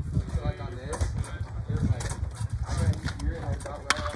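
Spectators' voices chattering, then a metal baseball bat hitting a pitched ball near the end: a single sharp crack.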